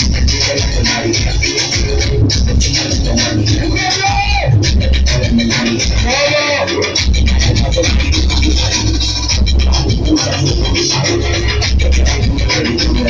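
Loud DJ dance music with a heavy, steady bass, with the DJ scratching over it; warbling scratch sweeps stand out about four seconds in and again around six to seven seconds.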